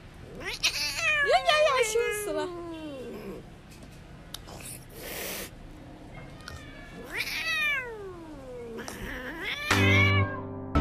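A cat meowing: two long, drawn-out meows that fall in pitch, one about a second in and one about seven seconds in, with a shorter call just before the end.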